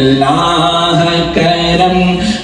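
A man's voice chanting a slow melody in long held notes, with a new phrase starting a little over halfway through.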